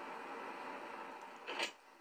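Faint, steady room tone and microphone hiss, with one brief soft noise about a second and a half in.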